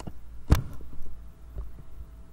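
Computer keyboard and mouse being handled on a desk: a few light clicks and one louder, sharp knock about half a second in, over a steady low hum.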